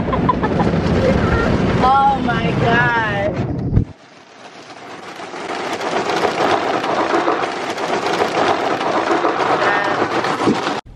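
Automatic drive-through car wash heard from inside the car: a loud, steady rush of water spray and washing on the body and windshield. Around two to three seconds in, a high voice wavers up and down over it; about four seconds in the sound drops away abruptly, then the rush of water builds back up.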